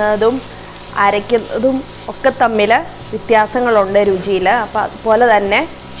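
Sliced onions, green chillies and dried red chillies sizzling as they are sautéed and stirred in a kadai, under a woman's speaking voice.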